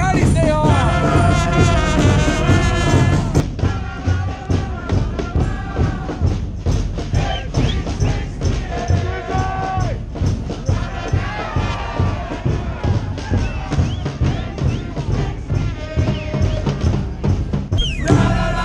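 Soccer supporters singing a chant together in the stands. From a few seconds in, a steady beat of about two strokes a second drives the chant.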